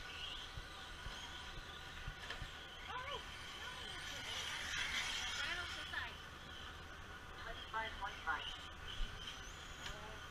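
Radio-controlled cars running on a dirt track, their motors giving a steady high whine that swells about halfway through, with indistinct voices.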